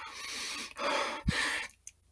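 A person breathing heavily into a close microphone: two long, breathy breaths, one after the other, with a small low click about a second and a quarter in.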